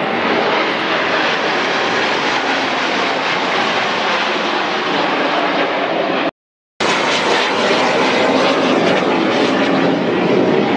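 A formation of airplanes flying overhead: a loud, steady rush of engine noise, broken by a sudden half-second dropout a little past six seconds in.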